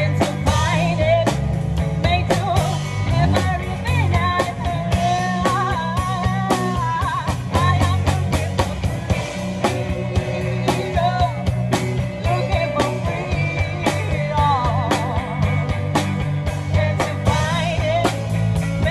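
Live band playing: a woman sings the lead melody into a microphone over electric guitar, bass and drums, with a steady beat.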